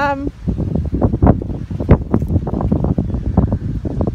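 Wind buffeting the microphone: a loud, uneven low rumble with frequent irregular gusty bumps, after a brief spoken "um" at the very start.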